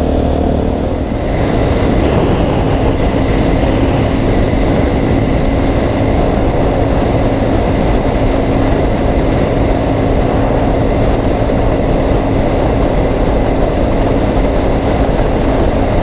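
Suzuki DRZ400E's single-cylinder four-stroke engine running steadily at cruising speed, with wind and road noise on the bike-mounted microphone.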